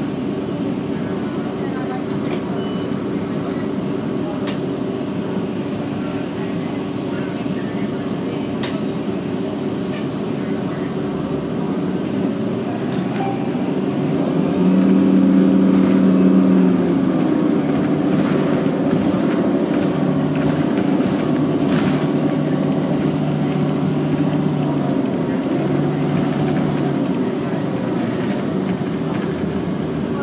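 Cabin sound of a 2009 Orion VII NG diesel-electric hybrid city bus under way: a steady drive hum and road noise with a pitched whine from the hybrid drive. The whine strengthens and steps in pitch, and the sound grows louder for a few seconds about halfway through, as the bus picks up speed.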